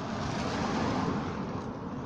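Steady wind and rolling-road noise on the microphone of a road bicycle being ridden along an asphalt lane, swelling slightly midway.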